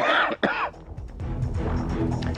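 A man coughs twice in quick succession close to the microphone. Then a background music bed of steady sustained low notes carries on underneath.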